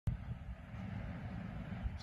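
Steady low rumble of city street ambience on a handheld phone microphone, with no speech.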